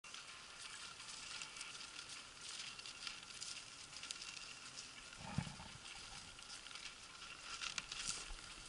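Faint crunching and rustling of footsteps through snow and dry grass, irregular and crackly, with one brief low sound about five seconds in.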